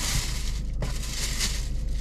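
Paper takeout bag and food packaging rustling and crinkling as they are handled, an irregular crackly rustle with a short break about halfway through.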